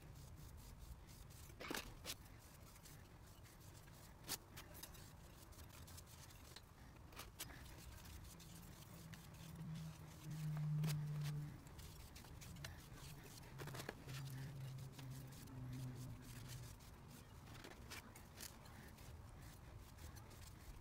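Faint handling sounds: a cloth rubbing oil finish onto a palette knife's wooden handle, with scattered light clicks and taps. A low hum is heard twice near the middle.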